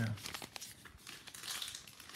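Trading cards and their packaging crinkling and rustling as they are handled, an irregular rustle with scattered small clicks that swells about halfway through. A voice trails off just at the start.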